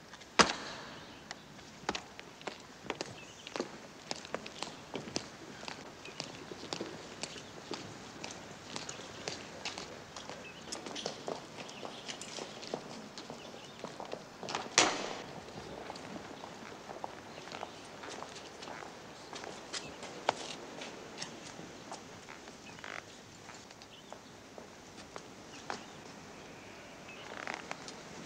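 Hard-soled boots walking on stone paving: a scattered run of footsteps and clicks, with two louder sharp knocks, one just after the start and one about halfway through.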